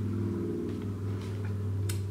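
A steady low hum with several even overtones, held without a break.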